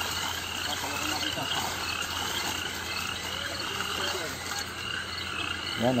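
Frogs calling around a pond at night in a steady chorus, one short call repeating about twice a second.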